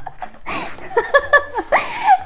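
A woman laughing in several short bursts.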